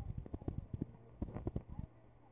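A rapid, irregular run of light clicks and knocks, dying out near the end, over a low steady hum.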